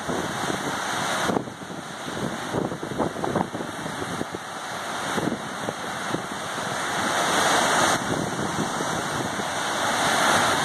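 Water cascading over concrete quay walls and steps into a harbour basin: a steady rushing noise that grows louder in the second half.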